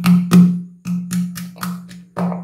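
Wooden pestle pounding ginger and garlic in a wooden mortar, about three strokes a second, often in pairs; each knock carries a short low ringing tone from the mortar.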